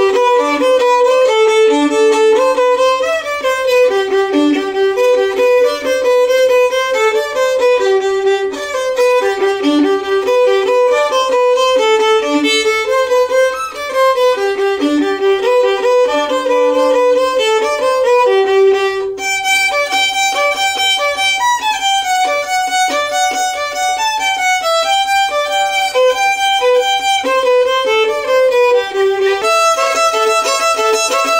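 Solo violin playing a fast fiddle tune in quick, even notes. About two-thirds of the way in, the melody moves up into a higher register.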